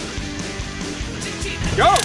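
Background music playing steadily, with a shout of "Go!" near the end.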